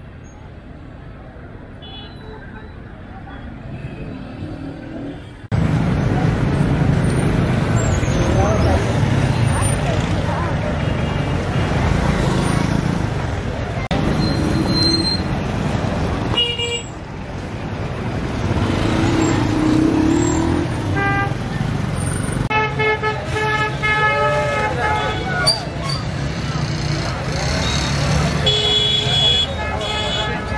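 Busy city street-market ambience: a crowd's chatter mixed with traffic and vehicle horns. It turns suddenly louder about five seconds in.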